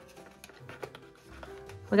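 Soft background music with held notes, under light paper clicks and rustles as cash envelopes in a box are flipped through.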